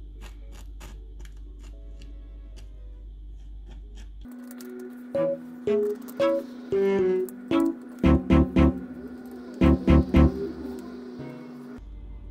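Faint, quick ticks and scratches of a needle picking at a thin sheet of hardened dalgona sugar candy. About four seconds in, music takes over until just before the end: a held low note, short pitched notes and two clusters of heavy low beats.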